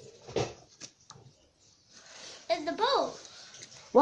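A child's brief, high-pitched voiced exclamation with a gliding pitch, heard about two and a half seconds in. It follows a single knock about half a second in and a few faint handling clicks.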